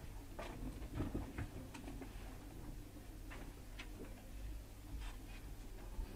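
Faint, irregular light clicks and knocks from people moving and handling things near the microphones, over a steady low hum.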